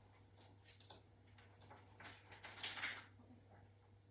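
Faint handling sounds of breastplate work: a few light clicks, then a rustling scrape about two seconds in, over a steady low electrical hum.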